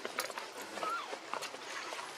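A few sharp clicks and scuffs, with one short high squeak about a second in.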